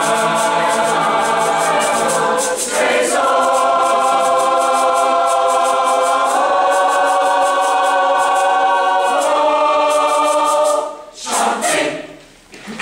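Mixed choir of men's and women's voices singing long held chords, moving to a new chord every three to four seconds, then cutting off together about eleven seconds in.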